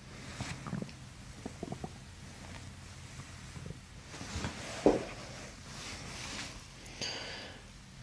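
Gurgling from a woman's abdomen as hands press on her belly in visceral manipulation, picked up by a microphone held close to the belly: scattered short gurgles and crackles, with a sharper one about five seconds in.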